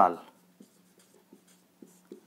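Marker pen writing on a whiteboard: a few faint, short strokes as a word is written.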